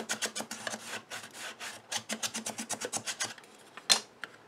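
Ruler rubbing and scraping quickly against cardstock inside a small paper box, pressing the freshly glued base down into the corners. The strokes stop about three and a half seconds in, and a single sharp tap follows near the end.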